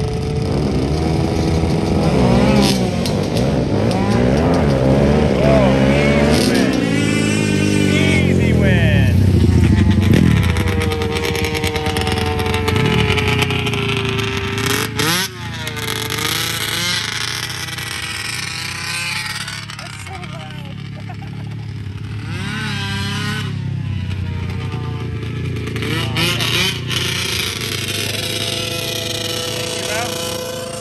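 Racing engines revving and accelerating on a dirt track, their pitch climbing and dropping again and again through gear changes over the first ten seconds. The sound is loudest around ten seconds in, then settles to a steadier engine note.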